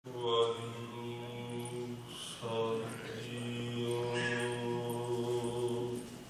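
A man's voice chanting on one steady held pitch in two long phrases, with a short break for breath about two and a half seconds in; it cuts off suddenly at the end.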